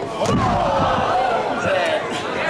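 A stomp slams onto the wrestling ring canvas right at the start, followed by a loud voice yelling, held and wavering in pitch.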